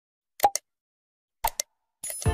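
Two mouse-click sound effects from a subscribe-button animation, about a second apart, each a quick double click. The first goes with the Subscribe button being pressed, the second with the notification bell.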